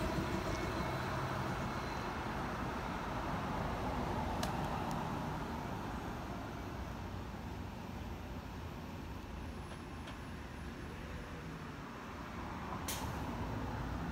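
A 2022 Gillig Low Floor Plus city bus with a natural-gas (CNG) engine drives away, its engine and tyre noise fading gradually over about ten seconds amid general road traffic. Two brief sharp sounds come through, one about four seconds in and one near the end.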